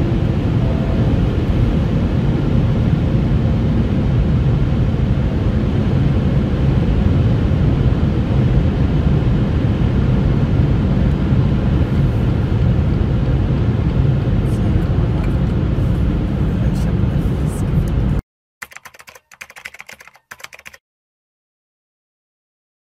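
Steady road and wind noise inside the cabin of a BMW M140i cruising at over 200 km/h and slowing, with no engine revving heard. It cuts off abruptly about 18 seconds in, followed by a few faint clicks and then silence.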